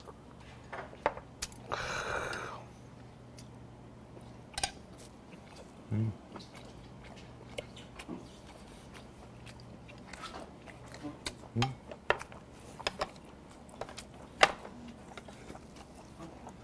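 A man chewing and eating with metal chopsticks, with small clicks of the chopsticks against a plate and scattered soft mouth sounds. About two seconds in, right after a shot of soju, there is a breathy exhale.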